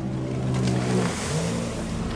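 Motorboat engine running steadily, its pitch rising a little past the middle.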